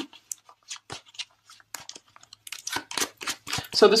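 A deck of reading cards being shuffled and handled by hand: scattered light flicks and slides, getting busier and more continuous about two and a half seconds in.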